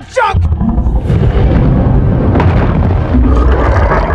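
Loud, deep rumbling with booms and crashes: movie sound design of a giant kaiju rampaging through a city, buildings exploding and collapsing.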